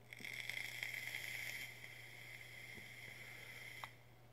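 A long draw on a vape: air drawn through the tank atomizer's airflow while the coil fires, an airy hiss with a high whistle, louder for the first second and a half, then fainter, and stopping just before the end.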